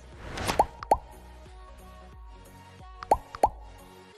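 End-screen sound effects over a soft music bed: a short rising whoosh leads into two quick pops that rise in pitch, about half a second and a second in, and another pair of the same pops about three seconds in.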